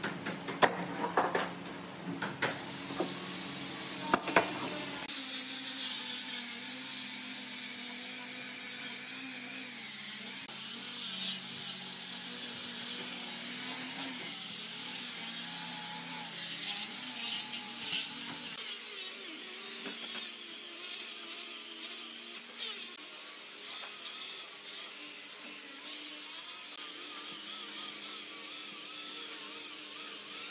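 A few sharp knocks from handling the wooden slab, then from about five seconds in an angle grinder fitted with a sanding disc running steadily against a solid-wood table top, a high motor whine over the scratch of the abrasive on the wood.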